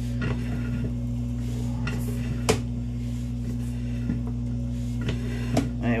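Sewer inspection camera rig with a steady electrical hum, and scattered clicks and light knocks as the push cable is pulled back through the line. The sharpest knock comes about halfway through.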